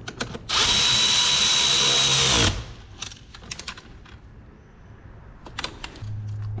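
Cordless electric ratchet running for about two seconds as it drives the battery terminal clamp nut down onto the post, with a steady whine that drops in pitch as it stops. A few light clicks and taps follow.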